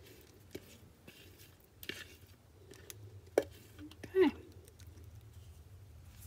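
Quiet, soft scraping and light clicks of a spatula working thick batter out of a plastic container into a silicone loaf pan, with one sharper tap about three and a half seconds in.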